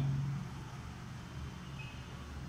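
Low steady hum with faint background noise in a quiet room.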